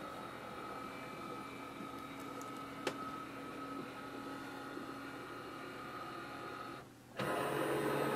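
Canon Pixma TS3450's flatbed scanner at work: a steady motor whine made of several held tones as the scan head travels under the glass, with a single click about three seconds in. Shortly before the end the whine cuts off and a louder, lower steady hum takes over.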